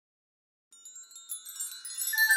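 Wind chimes tinkling in many overlapping high tones, starting faintly about two-thirds of a second in and growing louder as the song's music begins.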